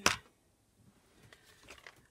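A single sharp clack as Distress Oxide ink pads are picked up from a craft supply tray, followed by a few faint handling ticks.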